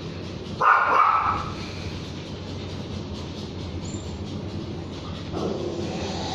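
A dog barks once, loudly, a little over half a second in, then gives a fainter, lower bark near the end.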